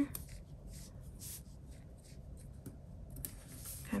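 Faint, scattered rustling and crackling of paper as stickers are peeled from a sticker sheet and pressed by hand onto a planner page.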